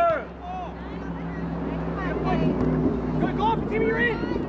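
Spectators' voices calling out across an outdoor soccer field, loudest at the start and again near the end, over a steady low hum that is strongest in the middle.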